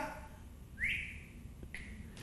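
A short rising whistle just under a second in, then a brief second whistled note, heard faintly.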